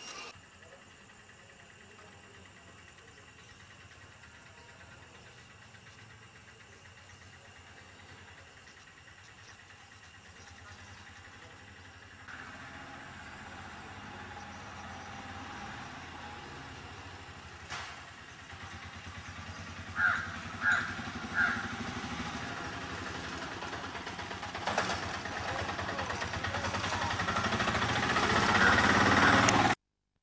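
Outdoor ambience, quiet at first and louder after about twelve seconds. Three short, harsh bird calls come close together about two-thirds of the way through. A rising rush of noise swells over the last few seconds.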